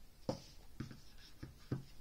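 Handling noise from a smartphone and its cardboard box: four soft knocks as they are moved and set down, with a light scratchy rustle of cardboard and paper between them.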